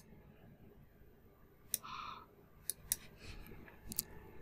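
Computer mouse clicking: about five sharp single clicks spread unevenly over a few seconds, with a short soft rustle about two seconds in.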